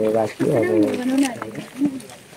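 A man's voice talking close by, with drawn-out vowels, fading out near the end; no other sound stands out.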